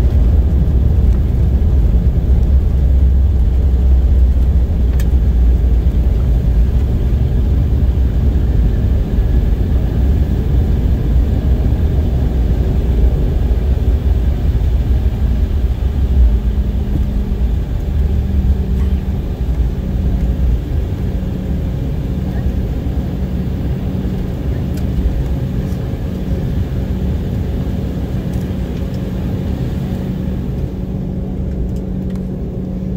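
Cabin noise of an Embraer 190 airliner taxiing after landing: engine noise with a deep rumble of the wheels on the ground that fades away over the second half as the aircraft slows, while a steady hum comes in about halfway through.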